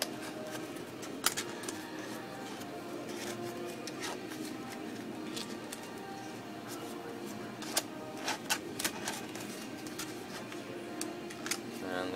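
Soft background music, with a few sharp clicks and rustles of flexible plastic puzzle-lamp pieces being handled and hooked together, the clearest about a second in and a cluster around the eight-second mark.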